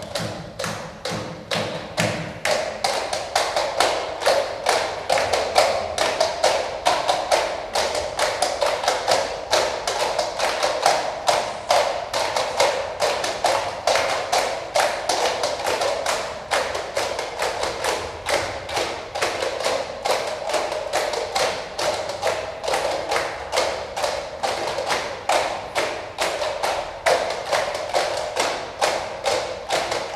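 Plastic cups knocked, tapped and slapped by a group of players in a fast, steady rhythm: cup percussion, about three to four hits a second throughout.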